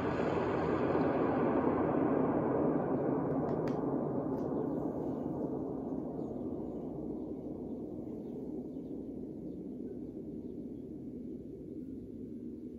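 Deep rumble of an atomic-bomb explosion sound effect, dying away slowly over about ten seconds, with a couple of faint ticks a few seconds in.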